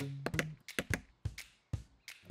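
Rapid hammer taps on a wooden fence, about six a second, thinning out and stopping just before the end, over background music.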